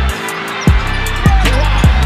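Hip hop backing track with deep bass drum hits that fall in pitch, about three in two seconds, over ticking hi-hats.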